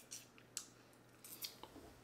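Near silence with a few faint, short clicks: mouth and spoon sounds from someone tasting a spoonful of sticky cranberry crumble.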